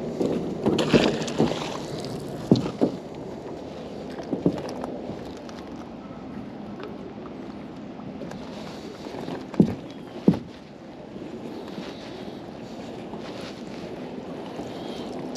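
Water lapping around a small boat while a magnet-fishing rope is hauled in by hand, with scattered knocks against the boat, two louder ones close together about ten seconds in.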